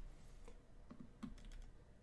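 Near silence with a few faint clicks from computer input, stepping through the moves of an on-screen chess game.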